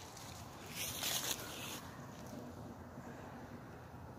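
A brief rustle of dry fallen leaves underfoot about a second in, then faint quiet.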